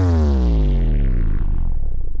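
Scouse house dance music from a DJ mix: a loud synth note with its overtones sliding steadily down in pitch over about two seconds into deep bass.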